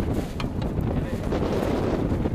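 Wind buffeting the microphone: a low, uneven rumble, with one sharp click about half a second in.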